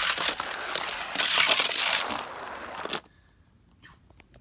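A die-cast toy car rolling down a plastic racetrack, a continuous rattling rolling noise that stops abruptly about three seconds in.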